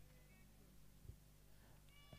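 Near silence: a faint steady low hum, with one faint short click about a second in.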